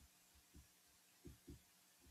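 Near silence: room tone with three faint, low thumps.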